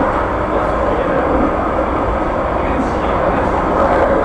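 Steady running noise of a tram in motion, heard from inside its passenger cabin.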